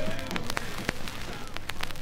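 Surface crackle and scattered pops from a 45 rpm vinyl single, heard plainly as the soul song fades away under them. The clicks come irregularly, a handful across two seconds.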